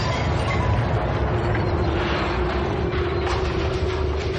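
Explosion sound effect in its long aftermath: a steady, loud, deep rumble of noise that carries on without a break. It is played on the air as the host's "blow me up" send-off that ends a caller's call.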